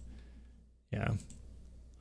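Faint computer clicking over low room hum while the screen is switched to a web page, with a single short spoken "yeah" about a second in.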